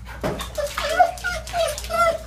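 A dog whining, a run of short high-pitched whines and yelps starting about a third of a second in, with clicks and shuffling along with them.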